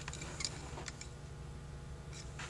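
A few faint, light clicks as the float of a Holley 2280 carburetor is handled and bent in place by hand, over a steady low hum.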